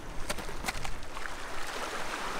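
Water splashing and sloshing as a hooked kahawai thrashes at the surface close to the rocks, with a few sharp ticks in the first second.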